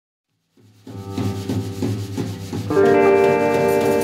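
Live blues music starting about half a second in: a guitar picking a low note in a steady pulse, about three strokes a second, then a chord ringing out from near three seconds in.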